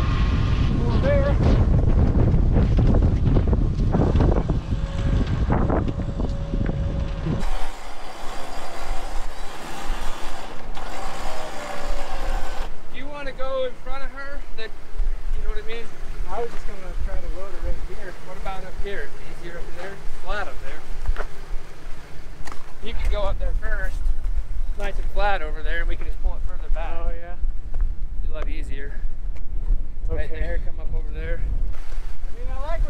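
Wind rumbling on the microphone for the first several seconds. After a cut, indistinct voices come and go over a low steady hum, and the wind rumble returns near the end.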